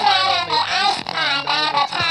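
A man's put-on, high-pitched elf character voice, babbling continuously without clear words.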